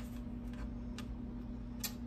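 A few light, irregular clicks of tarot cards being handled with long acrylic fingernails, over a faint steady hum.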